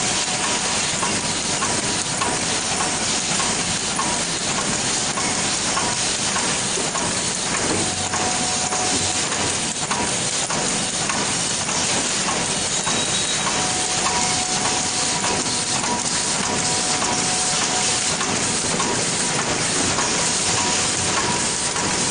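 Automatic cartoning machine running at production speed: a steady, dense mechanical clatter of rapid clicks over a constant hiss, with faint steady tones that come and go.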